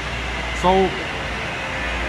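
Steady mechanical drone with a deep low rumble, the background noise of a tunnel worksite, under one short spoken word.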